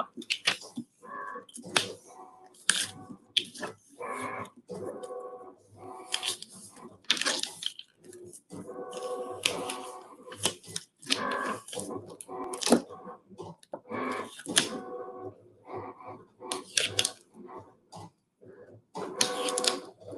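Reflective heat transfer vinyl being weeded with a hook tool and peeled off its carrier sheet, with irregular crackles, scratches and peeling sounds.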